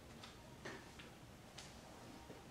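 Near silence: quiet room tone with about four faint, irregularly spaced clicks.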